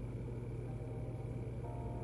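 Room tone with a steady low electrical hum. A couple of faint, steady higher tones come in near the end.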